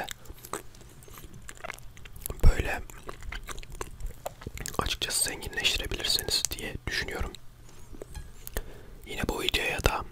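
Close-miked chewing of a mouthful of soft chocolate biscuit cake with banana, with many small wet mouth clicks and one loud sudden knock about two and a half seconds in.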